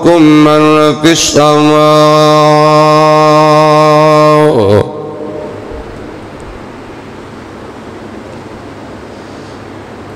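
A man's voice chanting in a melodic recitation: a couple of short sung phrases, then one long note held steady at a single pitch for about three seconds that stops about five seconds in. After that only a steady hiss of room noise remains.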